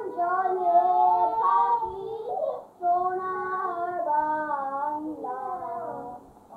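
A child singing a national anthem with no accompaniment, holding each note and moving in steps between them, with a short pause for breath about halfway through.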